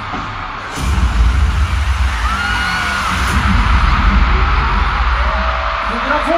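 Pop music played live at a concert, with a heavy bass beat that comes in suddenly about a second in, over a steady wash of crowd noise and a few shouts.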